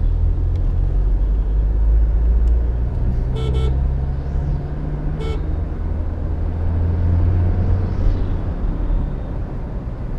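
Low steady engine and road rumble heard from inside a moving car, with two short vehicle horn toots about three and a half and five seconds in.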